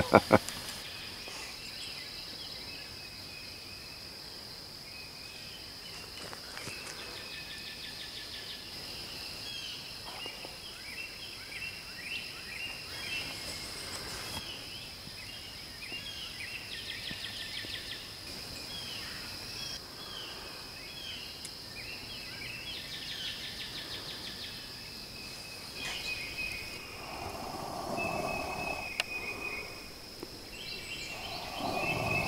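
Woodland ambience: a steady high-pitched insect drone with birds singing short repeated phrases over it.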